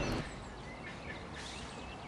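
Quiet outdoor background with faint bird chirps now and then.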